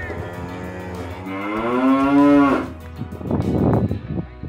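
A cow mooing: one long drawn-out moo starting about a second in, over steady background music, then a short rough burst of noise near the end.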